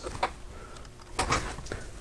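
A few light clicks and knocks of hard plastic parts being handled while small wire plugs are fitted inside an opened FrSky Horus X12S radio transmitter: one sharp click about a quarter second in, then a short cluster of clicks just past the middle.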